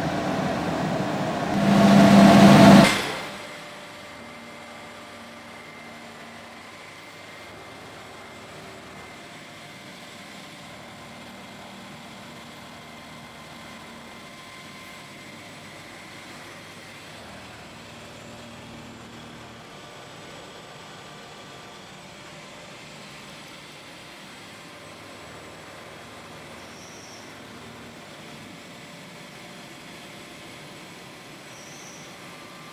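TSOP GX30LV fur ironing and glazing machine running: a loud rush of noise swells about two seconds in and cuts off sharply, dropping to a steady, much quieter machine hum with a faint whine.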